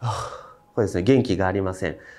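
A man's audible breath, like a gasp, then his voice for about a second with a strongly rising and falling pitch.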